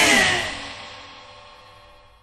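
The final chord of a punk rock song ringing out after the band stops, fading away steadily over about two seconds.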